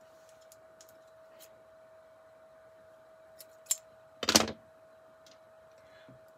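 Small clicks and taps of hands handling beads, twine and tape on a tabletop, with a sharper click and then a louder short clack about four seconds in. A faint steady hum runs underneath.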